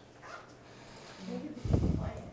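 A pause in a quiet room: a brief murmured voice, then a single loud, low thump near the end.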